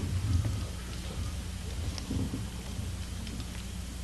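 Meeting-room noise with no speech: a steady low electrical hum in the recording, with low rumbles and thumps and a few faint clicks as people move about the stage.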